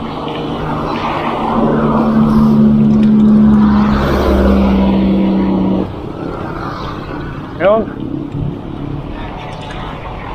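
Motor traffic passing a moving bicycle on a highway: a vehicle's steady engine drone grows loud about a second and a half in and cuts off abruptly near the middle, leaving quieter road noise. A short vocal exclamation is heard near the end.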